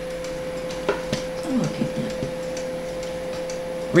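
Newly built desktop PC running with a steady hum, with two short clicks about a second in.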